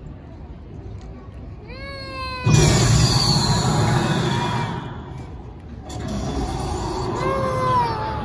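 Sound effects of the Unicorn Gundam statue's transformation show over outdoor loudspeakers. A pitched tone slides downward, then about two and a half seconds in a sudden loud rushing hiss with a falling whistle in it starts and fades after about two seconds. Another rushing passage starts near six seconds, with another sliding tone near the end.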